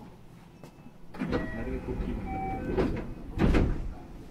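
Indistinct voices of people talking inside a train car, starting about a second in, with a brief louder burst of noise near the end.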